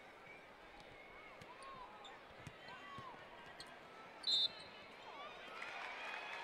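A basketball bouncing a few times on the hardwood court over a faint arena crowd murmur with scattered voices. About four seconds in, a short high whistle blast is the loudest sound.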